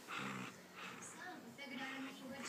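A puppy making small vocal noises as it chews and tugs at a sock in its mouth, alongside a woman's voice saying a short word.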